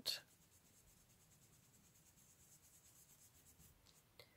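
Faint, soft rubbing of a foam ink blending brush being worked over cardstock and paper. It is barely above near silence.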